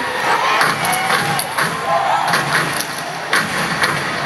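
Arena crowd cheering and shouting, with several sharp impacts cutting through.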